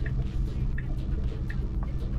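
Steady low rumble heard inside a car's cabin, with a faint light tick repeating about every three quarters of a second.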